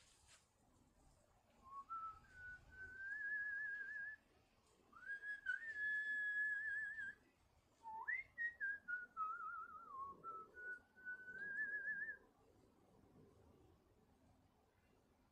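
A person whistling a wavering tune in four short phrases with brief pauses between them, the third opening with an upward swoop.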